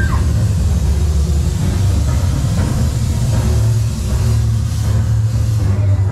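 Loud, steady rumbling noise with a hiss over it, with a brief arching whistle-like tone at the very start.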